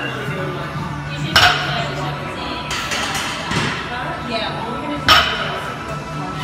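Two sharp metallic clanks of barbell weight plates, about four seconds apart, each with a short ring, over steady gym background music.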